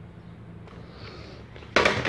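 Quiet room tone with a faint steady hum, then a sudden loud burst of handling noise near the end, as something is picked up or moved close to the microphone.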